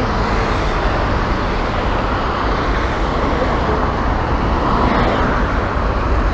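Steady road traffic noise with a deep low rumble throughout, swelling slightly about four to five seconds in.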